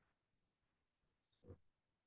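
Near silence: faint room tone, with one brief, faint sound about one and a half seconds in.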